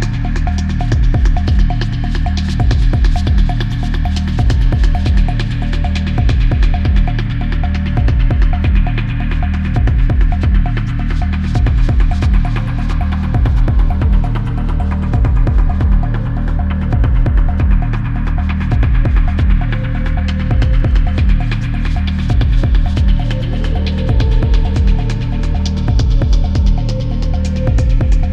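Hypnotic techno: a deep, throbbing bass pulse repeating evenly under a dense percussion pattern, with held synth tones above. A new synth tone enters near the end.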